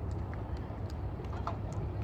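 Open-air ambience at a soccer field: a steady low rumble with faint, distant voices of players calling out on the pitch.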